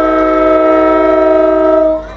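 Diesel locomotive air horn, a GP40, sounding one long held blast: a steady chord of several notes that cuts off sharply near the end.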